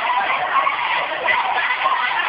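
Many children's voices overlapping in a continuous din.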